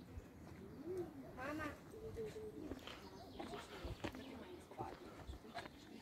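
Faint, unintelligible voices of people talking at a distance, with a brief pitched call about a second and a half in.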